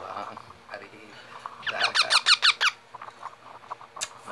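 Baby parrot giving a quick run of high, squeaky calls, about ten short falling notes in about a second, a little before the middle of the clip.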